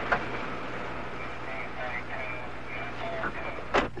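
Steady car engine and outdoor noise, with faint muffled voices underneath and a sharp knock near the end.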